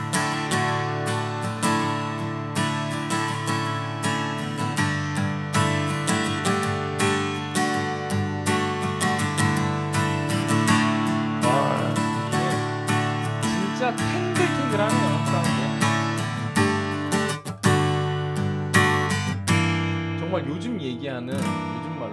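Cort LUCE-LE BW acoustic guitar strummed in steady rhythmic chords, picked up acoustically by a condenser microphone at the body rather than through its pickup.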